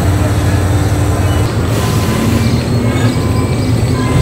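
A vehicle running steadily: a continuous low drone with a rumbling bottom and faint held tones above it.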